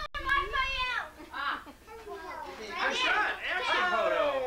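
A young child's high-pitched voice, squealing and babbling, mixed with excited voices and laughter. The sound cuts out for an instant right at the start.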